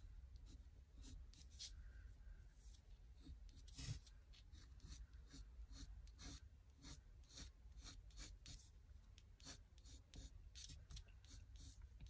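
Faint scratching of a coloured pencil on paper: short sketching strokes, a couple a second, one a little louder about four seconds in.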